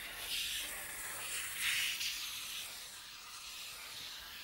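Two sticks of coloured chalk held together, rubbing round a spiral on black paper: a soft scratchy hiss that swells with the strokes, most clearly about half a second in and again near the two-second mark.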